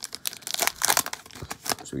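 Shiny plastic wrapper of a hockey card pack crinkling in irregular crackles as it is torn open and pulled off the cards.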